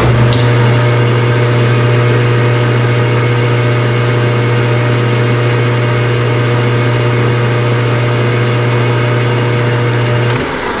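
Metal lathe switched on and running steadily with a strong low hum and a few steady higher tones, while a tool bit cuts into a small metal bar. The motor stops just after this.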